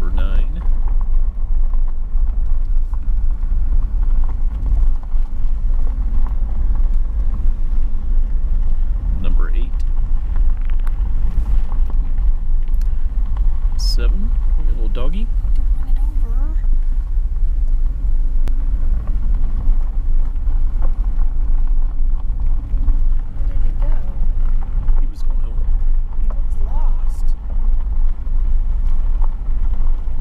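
Vehicle driving slowly on a gravel road: a steady low rumble of engine and tyres throughout, with a few faint brief sounds near the middle.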